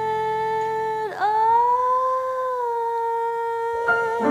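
Female jazz vocalist holding a long sustained note over sparse backing. About a second in her voice dips sharply in pitch and climbs back to hold a slightly higher note. Near the end the piano trio comes in more fully under her.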